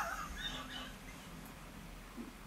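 A man's laugh trailing off in the first half second, then quiet room tone.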